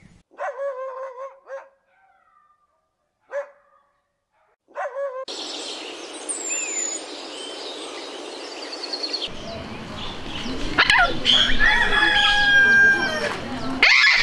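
Three short pitched animal calls with silence between them, then a steady outdoor hiss with a few bird whistles. Near the end come louder, busier bird calls.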